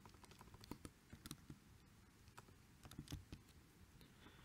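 Faint computer keyboard typing: irregular, scattered keystrokes in small clusters.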